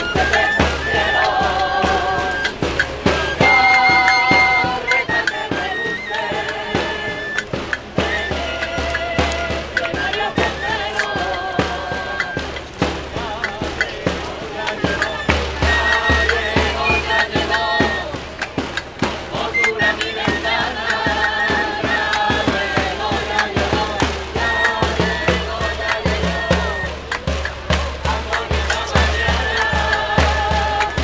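A group of people singing a folk song together, with rhythmic hand clapping and a tamboril drum beating time.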